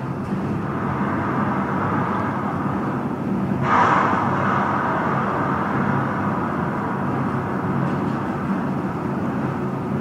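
Steady rushing hum inside a passenger elevator cab as it travels, with a brief swell of hiss about four seconds in.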